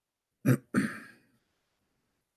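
A man clearing his throat: a short sharp burst followed at once by a longer one that trails off.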